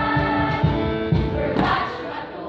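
A mixed school choir singing sustained notes over an accompaniment with a steady low beat, about four beats a second.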